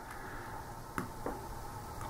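Quiet room tone with one sharp light click about a second in and a fainter tap just after: a cardboard wargame counter being set down on the map board.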